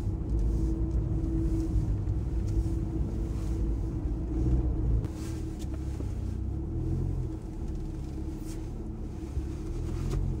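Hatchback car's engine and tyre rumble heard from inside the cabin while driving slowly. The rumble eases and gets quieter about halfway through as the car slows to pull into a parking lot.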